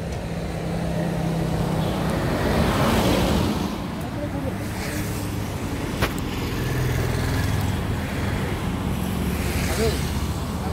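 Road traffic on a highway: vehicle engines running and passing by, one swelling past about three seconds in. Voices are talking, and there is one sharp click about six seconds in.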